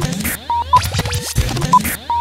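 Old-film countdown leader sound effect: short beeps, clicks, scratchy sweeps and a low hum in a repeating pattern, counting down.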